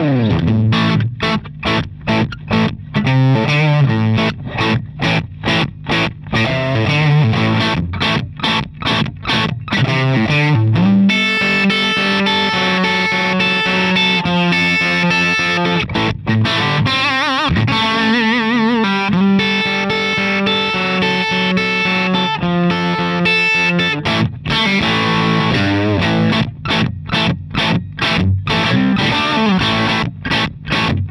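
Suhr Custom Classic electric guitar played through a Ceriatone Prince Tut, a Princeton Reverb–style amp, at volume 3 o'clock with the negative feedback bypassed, giving a gainy, broken-up tone. Short chopped chords for about the first ten seconds, then held notes with vibrato, then chopped chords again near the end.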